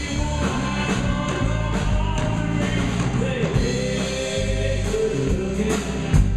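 Live band playing with a man singing lead over a strummed acoustic guitar, bass and a steady beat.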